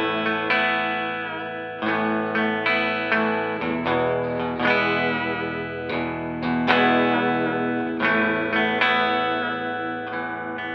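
A Rickenbacker 325JL electric guitar with three Toaster pickups, played through a 1964 Fender Twin Reverb amplifier. Chords are strummed and left to ring, with a new strum about every half second.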